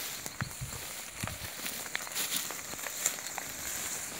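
Footsteps and rustling of several people walking through tall grass, with scattered short clicks and snaps.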